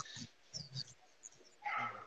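Dogs whimpering and yipping faintly in a few short sounds, with a louder sound coming in near the end.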